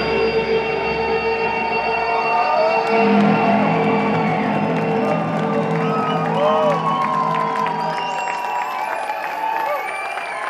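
A live psychedelic rock band's held notes and drone ring out at the end of a song and fade over the last few seconds. Through it, the audience cheers, whoops and claps, louder from about three seconds in.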